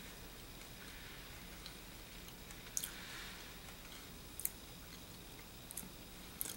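Faint chewing of a soft, jelly-like unripe green almond seed, with a few small clicks from the mouth.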